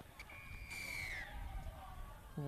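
A faint high whistled note, held for about a second and then sliding down in pitch, over faint open-air ground ambience.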